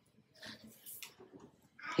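A mostly quiet pause between spoken sentences, with a few faint short noises: soft breaths and small rustles, and an intake of breath just before speech resumes near the end.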